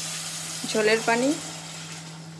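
Water poured into a saucepan of cauliflower and potatoes frying in hot oil, setting off a steady hiss and sizzle. A woman's voice is heard briefly about a second in.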